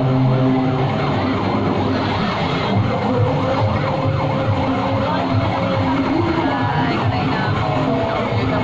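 Loud street-parade din: music mixed with crowd noise, with wavering, gliding tones running through it.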